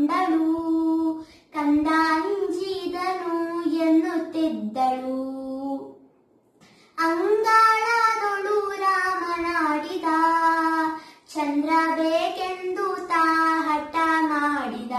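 A young girl singing a devotional song solo, with no accompaniment, in held, gliding phrases and a short pause about six seconds in.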